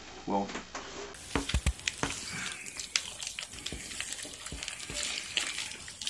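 Wooden spoon working beaten eggs into stiff mashed potatoes in a stainless steel pot: wet squelching with irregular light knocks of the spoon against the pot.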